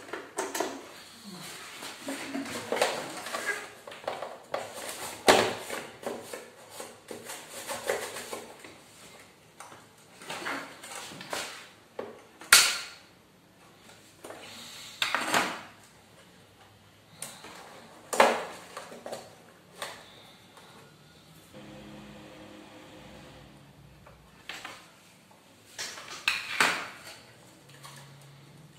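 Hard plastic casing of a cassette player and tools being handled on a tabletop: an uneven run of knocks, clicks and rattles. The sharpest knocks come about halfway through and again some six seconds later.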